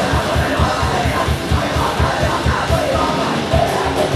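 Live heavy rock band playing loud: electric guitar, bass guitar and drum kit on a fast, steady beat, with a singer yelling the vocals into a microphone.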